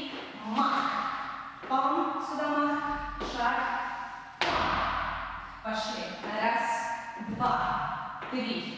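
A woman's voice sounding out the rhythm of the dance in short wordless syllables, over thuds of dance steps and stamps on the studio floor, the sharpest about four and a half seconds in.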